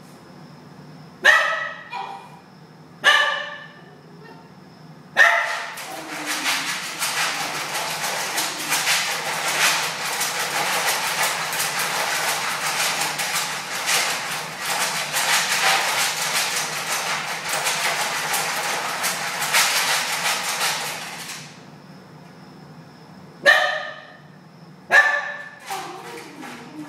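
A Basenji shut in a wire dog crate gives two short high-pitched calls, then scratches and paws at the crate for about sixteen seconds, a dense rattling clatter. Near the end the scratching stops and she calls twice more.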